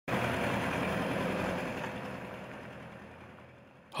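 Tractor engine running as it tows a water-tank trailer, the sound fading away steadily over the last couple of seconds.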